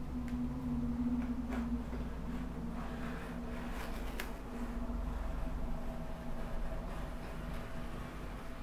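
A rotary cutter rolling along a metal straight edge, slicing through several folded layers of a cotton bed sheet on a glass board, with a few faint clicks. A steady low hum runs underneath.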